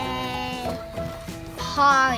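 Two sheep-like bleats over steady background music: a long even one at the start, and a higher one near the end that falls in pitch.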